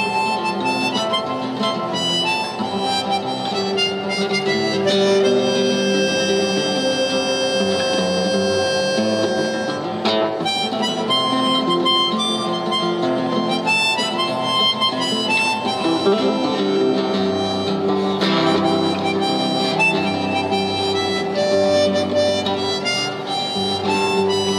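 Harmonica playing a melody with long held notes over a nylon-string classical guitar accompaniment.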